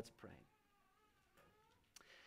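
Near silence after a man's words trail off, with a faint, high, wavering cry in the background.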